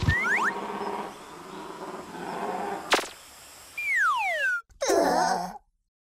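Cartoon sound effects: two quick whistle glides at the start, a sharp click about three seconds in, then a long falling whistle and a short warbling burst, with a faint buzzing haze underneath. The sound drops out to silence just before the end.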